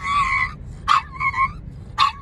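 A pug whining in short, high cries: one at the start, another about a second in, and a third beginning at the end, each starting sharply and then held briefly. It is whining to be given strawberries.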